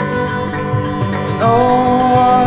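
Live band music in a passage between sung lines: strummed acoustic guitar over a steady rhythm, with a louder held melody line coming in about one and a half seconds in.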